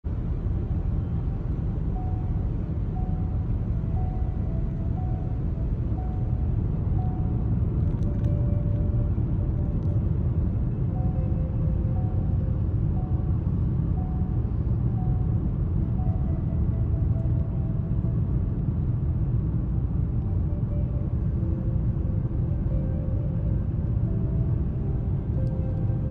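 Steady low road and engine noise inside a moving car's cabin, with a slow, faint melody of soft music over it.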